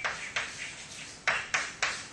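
Chalk writing on a blackboard: a series of short, sharp chalk strokes, one about a third of a second in and three more in quick succession in the second half.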